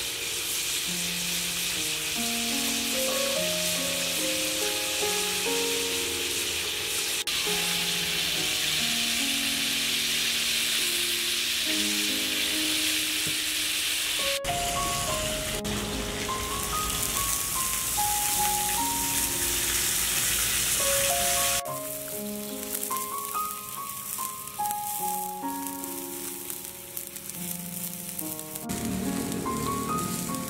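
Snake meat sizzling as it fries in a wok, under background music with a slow melody. The sizzle drops away about two-thirds of the way through, and near the end coconut water splashes into the wok.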